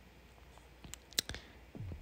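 Two faint, sharp clicks from working a computer, about a second in and a quarter second apart, over quiet room tone.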